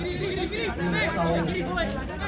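Several voices talking and calling out over one another, with no clear words: sideline chatter among people watching a rugby match.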